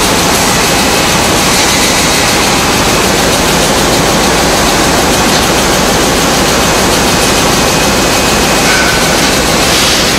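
Tea-bag packing machinery running: a loud, steady mechanical noise with no clear rhythm.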